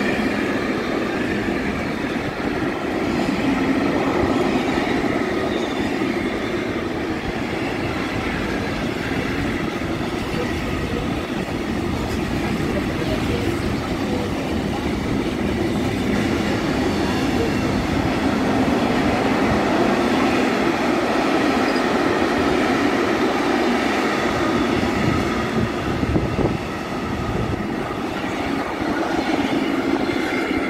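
Container freight wagons rolling past on the rails: a steady loud wheel-and-rail rumble with faint high ringing tones over it, dipping briefly in loudness near the end as the tail of the train goes by.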